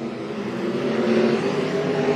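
Winged dirt-track sprint car's V8 engine running hard through a turn, its note climbing a little as it drives on, over a haze of engine and tyre noise.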